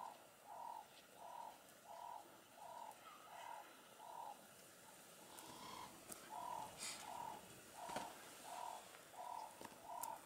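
A bird repeating a soft hooting note in a long, evenly spaced series, about three notes every two seconds, with a short break about halfway through. A few faint higher chirps sound above it.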